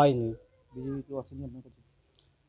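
Speech only: a man talking, breaking off briefly, then a softer stretch of talk.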